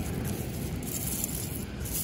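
Beach ambience: a steady low rush of outdoor noise, with no distinct events.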